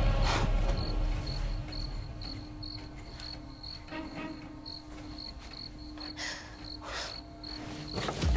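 Crickets chirping steadily in short high chirps, about two to three a second, over a low steady hum. A low rumble fades out over the first second or so.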